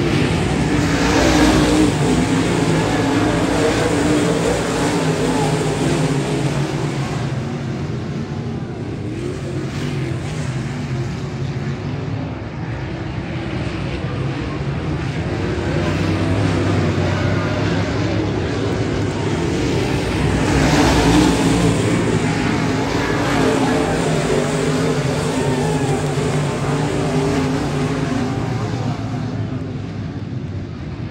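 Race car engines running laps on a dirt oval. The sound swells loudest as the cars pass about a second or two in and again about 21 seconds in.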